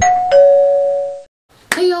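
A two-note ding-dong chime, a higher note followed by a lower one, ringing for about a second and then cutting off.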